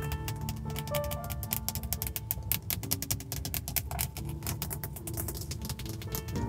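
Rapid, light fingernail tapping on a Hyundai steering wheel's rim and plastic hub, many taps a second, over soft spa-style background music.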